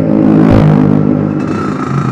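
Yamaha RXZ's two-stroke single-cylinder engine running under way, its note rising a little about half a second in as the bike pulls along.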